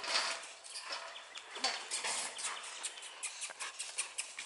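Steel hog trap rattling and clanking with scattered sharp knocks as its gate is raised and a trapped doe scrambles inside, bolting out near the end.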